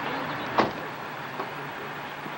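Steady vehicle or traffic noise, with a single sharp click about half a second in.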